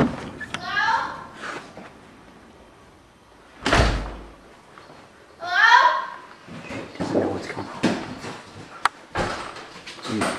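A girl screaming in fright: a short high cry about a second in, then a loud, high scream with falling pitch about five and a half seconds in. Between them, about four seconds in, a single heavy bang of a door slamming.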